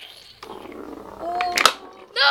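Rubbing and handling noise on a handheld camera's microphone, with a brief pitched hum about a second in, followed by a few sharp clicks.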